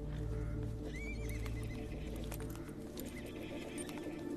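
A horse whinnies about a second in: a short, wavering, high call, with a smaller one near the end. Scattered hoof steps sound under it, over low, sustained film-score music that thins out about three seconds in.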